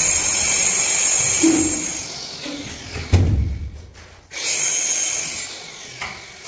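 A power tool runs in two spells of a second or two each, with a heavy thump between them.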